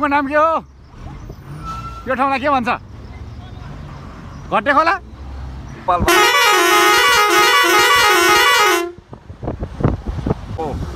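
A vehicle's musical horn sounds a loud, repeating warbling tune for about three seconds, starting about six seconds in and cutting off abruptly, over a low engine rumble.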